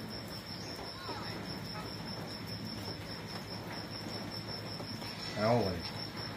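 Insects chirring steadily: a high-pitched, rapidly pulsing trill. A man's voice comes in briefly near the end.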